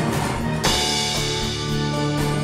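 Lap-played slide guitar in a live blues instrumental passage, with sustained notes over a steady low note and a percussive beat, and a louder, brighter accent about two-thirds of a second in.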